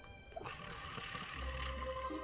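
Quiet background music with long held tones. A soft rushing noise comes in about half a second in, and a low hum joins about halfway through.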